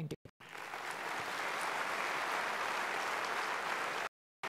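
Conference hall audience applauding, building up over the first second and then steady; it cuts off suddenly at the end.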